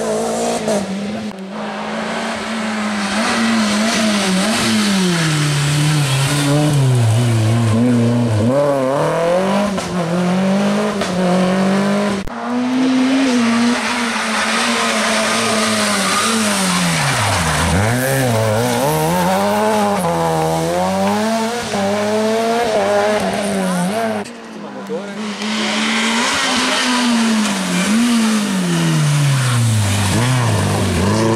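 Rally cars (Renault Clio and Opel Astra hatchbacks) passing one after another on a tarmac special stage, their four-cylinder engines revving hard and dropping back through gear changes and braking for the bends. The sound cuts abruptly from one car to the next about a second in, near the middle and near the end.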